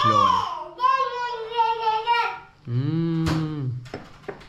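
A child's high voice, drawn out in a sing-song for about a second and a half, between short stretches of a man's lower voice.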